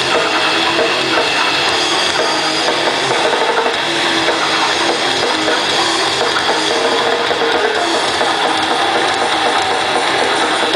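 Grindcore band playing live, with distorted electric guitar, bass and drum kit in a loud, dense, unbroken wall of sound.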